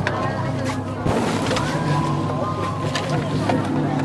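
Indistinct voices over a steady low hum, with a few sharp clicks.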